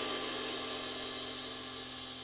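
Istanbul Mehmet Legend 21-inch sizzle ride cymbal ringing out after a stroke, a dense hissy wash of sizzle that slowly fades.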